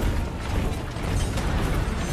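Film sound of a massed army on the march: a dense, continuous clatter of armour and spears over a deep low rumble.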